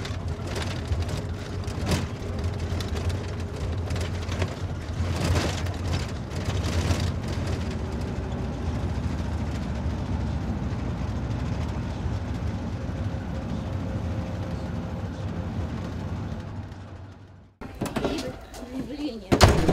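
Engine and road noise of a moving vehicle heard from inside its cab: a steady low rumble, with a few knocks in the first seven seconds. It fades out just before the end.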